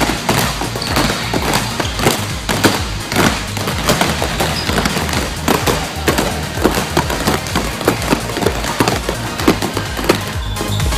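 Several basketballs being dribbled two at a time on a gym floor: a rapid, irregular stream of bounces. Background music plays underneath.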